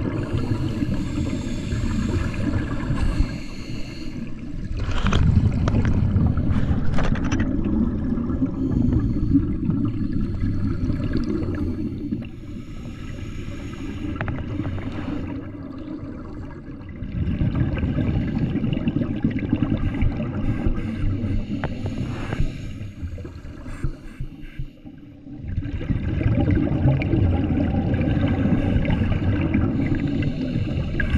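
Scuba regulators exhaling underwater: long spells of rumbling, bubbling exhaust noise, dropping to quieter stretches about twelve seconds in and again about twenty-four seconds in, between breaths.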